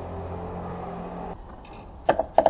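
Steady low mechanical hum that cuts off about a second and a third in, followed by a few faint light clicks.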